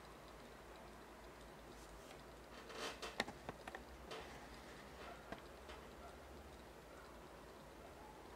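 Near silence, with a few faint, irregular clicks about three seconds in and one or two more after five seconds, while a small low-temperature Stirling engine runs almost silently.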